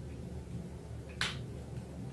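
A single short, sharp click a little over a second in, as a plastic tiara is pushed down and settled onto the hair, over a low steady hum.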